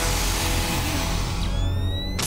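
Dark cartoon underscore with sci-fi machine effects: a long hiss from a fogged glass transformation pod, then a rising electronic whine about one and a half seconds in.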